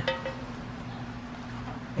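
Low background noise with a faint steady hum and no distinct event.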